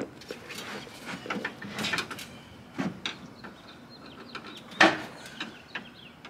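Knocks and scraping as a heavy Harley-Davidson Road Glide's rear end is lifted and shifted sideways across a pickup truck's bed liner, with one loud knock near the end.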